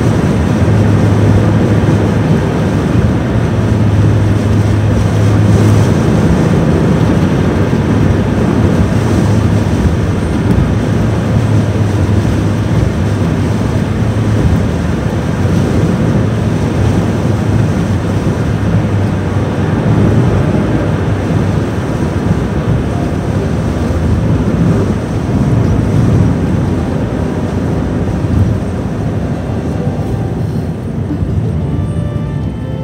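Steady road noise inside a moving car's cabin: tyres on a snowy highway with a low drone and strong wind rushing against the car.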